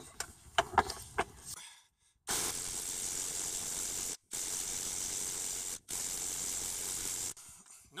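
Cordless half-inch impact driver with a 22 mm high-mass impact socket hammering on a crankshaft pulley bolt in three runs of about one and a half to two seconds each; the bolt does not come loose. A few knocks come first as the socket goes onto the bolt.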